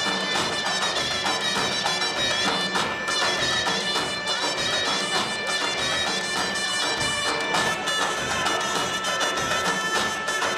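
Armenian folk dance music: a reedy wind melody over a steady drone.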